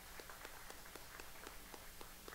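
Faint, sparse applause from an auditorium audience: a few hands clapping in a steady rhythm of about four claps a second.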